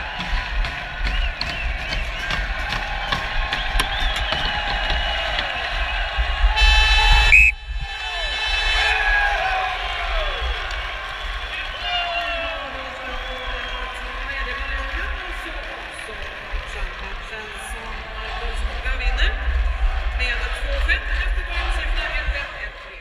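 Hockey arena horn sounding once for about a second, about seven seconds in, over steady crowd noise and shouting voices.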